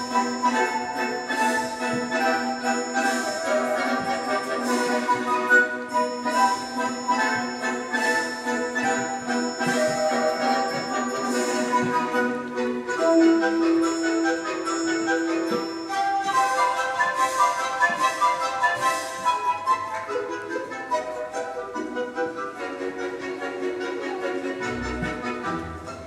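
Classical orchestral music for a ballet solo, with a held low note through roughly the first half, a sustained higher note a little past the middle, and a steady beat of accents.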